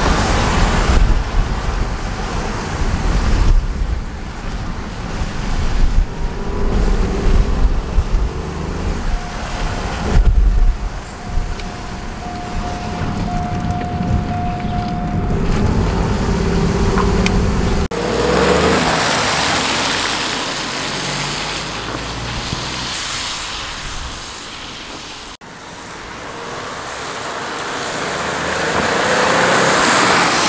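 Ford Focus 1.0-litre EcoBoost three-cylinder turbo engine, on its standard airbox, heard from inside the cabin as the car is driven and revved, with a deep engine rumble rising and falling with load. About 18 s in, after a cut, the same car is heard from outside driving toward the camera on a wet road, its tyre hiss and engine swelling to their loudest near the end.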